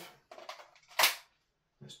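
Gas-blowback airsoft MP5K firing a single sharp shot about a second in, with the bolt cycling.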